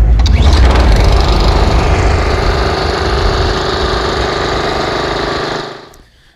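Intro sound effect: a sudden deep boom, then a steady engine-like drone holding one pitch, which fades out shortly before the end.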